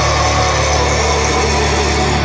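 Heavy metal music: a heavily distorted low chord held steady under a dense wall of sound.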